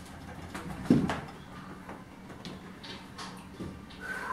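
One short low thump about a second in, with a few faint knocks around it and a steady low hum, from a man doing sit-to-stand squats off a high chair while holding wall bars.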